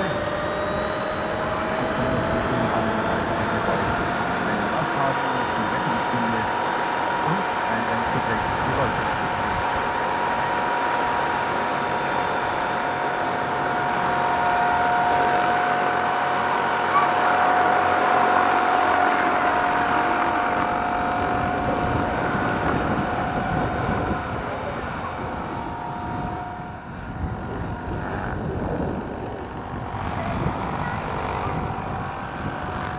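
Two large electric RC scale tandem-rotor helicopters, 1/7-scale CH-113 Labrador replicas driven by Kontronik Pyro 850 motors, spooling up with a rising motor and gear whine. They then run steadily at flying rotor speed with the rush of their twin rotors as they lift off and fly.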